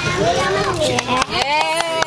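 Children's voices: a young boy speaking haltingly, with other children chattering around him.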